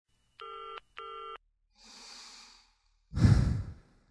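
Two short electronic beeps, each under half a second, followed by a faint breathy hiss and then a louder, deeper burst about three seconds in that fades away.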